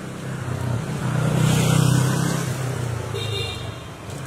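A car passing close by, its engine sound swelling to a peak about two seconds in and then fading, with a brief high beep shortly after.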